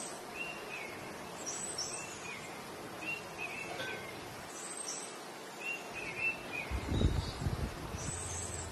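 Birds chirping in short repeated calls over a steady outdoor noise bed, with a brief low rumble about seven seconds in.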